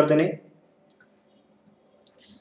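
A man's lecturing voice that stops about half a second in, followed by near quiet with a single faint click about a second in.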